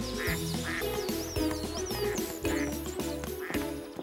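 Ducks quacking a few times and small birds chirping, over light background music with a steady bass line.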